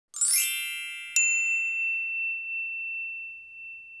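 A short bell-like chime sting: a cluster of ringing tones sweeps up in the first half second, then a second bright ding strikes about a second in. One high tone rings on, fading slowly.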